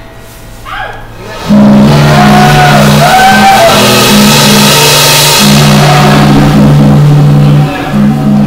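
Live rock trio of electric bass, drum kit and amplified acoustic guitar. A chord rings out and fades, then about a second and a half in the whole band comes in loud, with a pulsing bass line under a wash of cymbals.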